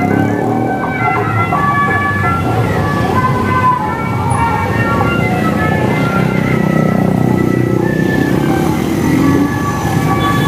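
Cars and motorcycles passing close on a street, their engines and tyres making a steady rumble. Over it, music with a stepping melody plays from a loudspeaker, most likely the ondel-ondel busker's roadside cart.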